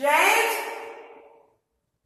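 A person's loud, breathy sigh that starts suddenly and fades out over about a second and a half.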